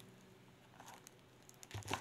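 Mostly near silence, with a couple of faint, brief handling noises from hands working over a pot of stuffed vegetables, about a second in and again near the end.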